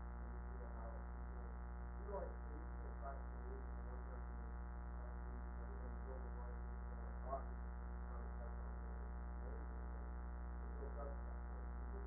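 Steady electrical mains hum, with a faint, distant voice speaking off-microphone: an audience member asking a question.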